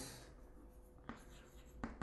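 Chalk writing on a blackboard: faint scratches and taps of the chalk, with two slightly sharper taps about a second in and near the end.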